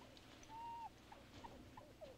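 Faint squeaky animal calls in jungle night ambience: one short held whistle-like note, then three or four brief falling squeaks.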